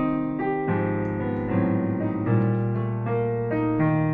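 Digital piano played with both hands: a slow piece of held chords over a bass note that changes about once a second.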